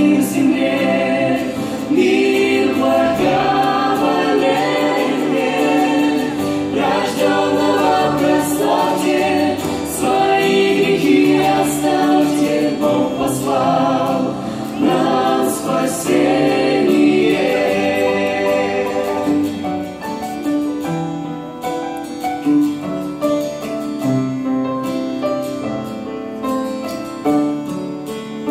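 A mixed vocal group sings a Russian-language Christmas song in harmony, with acoustic guitar and keyboard accompaniment. The voices fall away over the last several seconds, leaving mostly the instruments.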